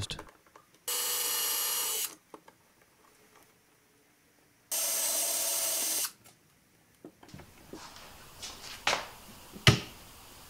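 A cordless drill running in two steady bursts of about a second each, its bit working into the plywood front. Near the end come a couple of sharp knocks.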